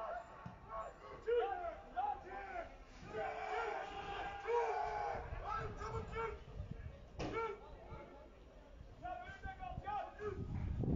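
Shouting voices of players on a football pitch, calling in short bursts that carry across an open, near-empty ground, with one sharp thud about seven seconds in.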